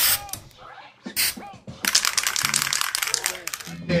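Turntable record scratching: a couple of short scratches with quick pitch sweeps, then a fast stuttering run of chopped scratches for about two seconds near the end.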